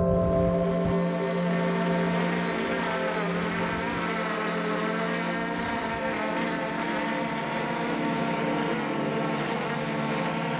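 Small quadcopter drone, a DJI Mavic Air 2, flying with its propellers running: a steady multi-tone whine whose pitches waver slightly.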